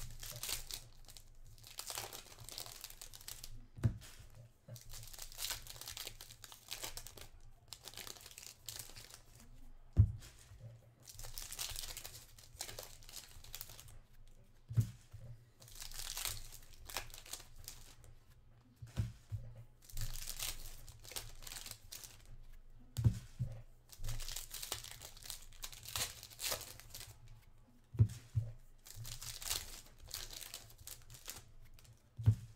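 Trading card pack wrappers being torn open and crinkled, one pack after another, in repeated rustling bursts. A few dull thumps come in between, the loudest about ten seconds in.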